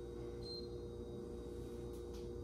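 Non-contact infrared forehead thermometer giving one short high beep about half a second in, over a steady low room hum.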